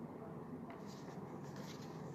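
A quiet pause: faint room noise with a low steady hum and a light scratchy rustle.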